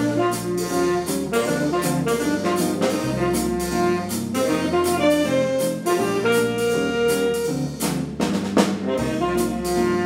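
Jazz ensemble playing: saxophones and brass holding notes over bass, piano and a drum kit keeping a steady beat.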